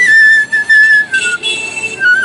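Bamboo transverse flute (bansuri) played solo: a melody of clear, breathy held notes stepping down in pitch, then jumping to a higher note held through the last half second or so.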